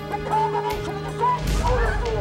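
Wavering, high cries of distress over a steady held music drone, with a low thud about one and a half seconds in.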